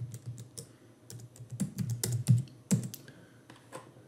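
Computer keyboard keys clicking as a word is typed: an irregular run of keystrokes, densest and loudest in the middle, thinning out near the end.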